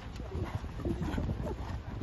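A horse cantering on grass turf, its hoofbeats irregular low thuds, with short wavering calls or voices over them.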